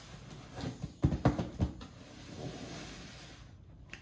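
A few soft taps of hands on a cardboard shipping box, about a second in, over faint room hiss.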